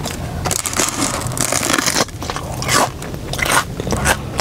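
Close-miked biting and chewing of a crisp fried fruit pie, its crust crunching and crackling in a run of short, uneven crunches.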